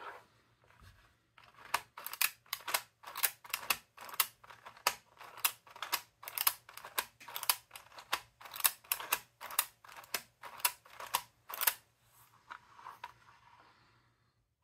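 3D-printed plastic parts of a mechanical seven-segment counter clicking as its arms and ratchet mechanism are worked by hand. The clicks come quickly, two or three a second, starting about two seconds in and stopping a couple of seconds before the end.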